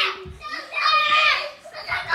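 A young child's high-pitched voice vocalizing without clear words, in two bursts: a short one at the start and a longer one about half a second in, with a few soft low thumps.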